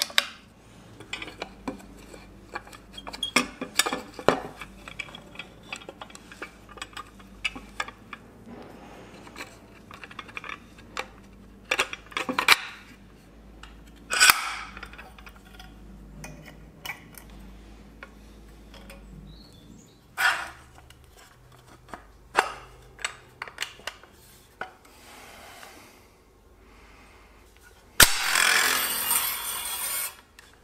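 Steel fittings and coil springs of a homemade spring bow clinking and knocking as it is put together by hand, in scattered sharp clicks and taps. Near the end a loud rushing noise lasts about two seconds.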